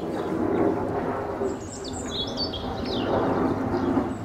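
Asian small-clawed otters chirping, with a run of high, quick chirps about halfway through over a steady lower background din.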